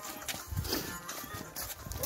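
Footsteps of people walking: a few uneven steps.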